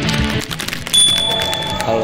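Distorted punk rock guitar intro music that stops about half a second in, followed by the clicks and a short, steady high tone of a subscribe-button animation, with a man's voice starting near the end.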